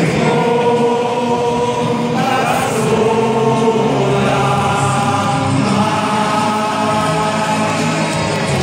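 A stadium crowd of football supporters singing a club song together in chorus, in long held notes that change about once a second.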